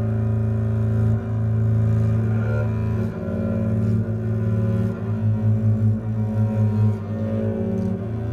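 Acoustic double bass played with a bow: sustained low notes, with a stretch of quick pulsing bow strokes, about four a second, in the second half.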